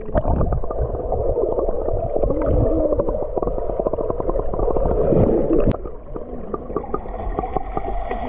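Underwater pool sound heard through a submerged action camera: muffled gurgling of moving water with a steady crackle of small bubble clicks and wavering muffled tones.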